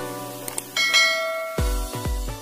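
Notification-bell sound effect: a short click, then a bright bell ding about three-quarters of a second in, over background music. A beat with deep kick drums enters near the end.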